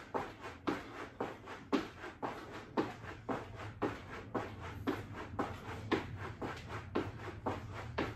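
Sneakers landing on a rubber floor mat during fast jumping jacks, a soft thud about twice a second.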